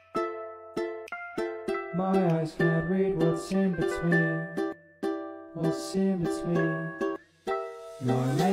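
Instrumental music: short plucked ukulele notes, joined by a bass line about two seconds in, with two brief breaks where the sound drops out.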